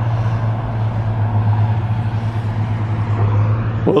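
Diesel engine of nearby logging equipment running steadily at a constant pitch, a strong low hum.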